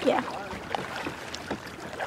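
Kayak paddling on a lake: the paddle blade stirring and splashing the water, with a couple of light clicks.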